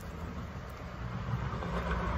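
A car driving past on the road, its tyre and engine noise swelling toward the end, over a steady low engine rumble.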